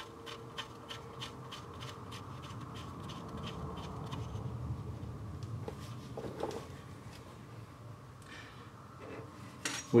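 Oil drain plug being threaded into the engine oil pan by hand: faint, light metallic clicks, about four a second, that fade out about six seconds in, over a low steady hum.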